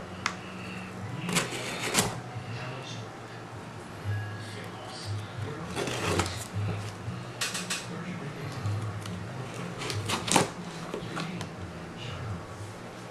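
A cardboard package being handled and cut open with a folding knife: scattered clicks and knocks, with a short rasping cut about six seconds in.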